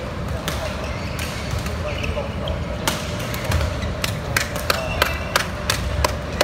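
Sharp cracks of badminton rackets striking shuttlecocks, several in quick succession about every half second in the second half, over a steady murmur of voices in the hall.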